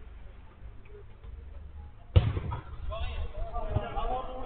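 A single sharp, loud thud of a football being struck about two seconds in, followed by players calling out.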